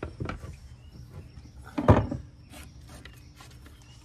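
Blank wooden skateboard decks being handled: light knocks and rubbing as decks are slid off a stack and set upright against each other, with one sharper knock about halfway through.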